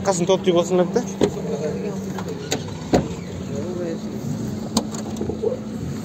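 A few sharp clicks and knocks from a small hatchback's doors being handled, the fullest about three seconds in. Brief talking comes at the start, over a steady low hum.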